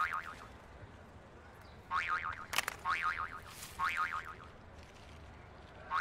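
Short chirping bird calls repeated in bunches about once a second, with a pause in the first half. There is a single sharp click near the middle.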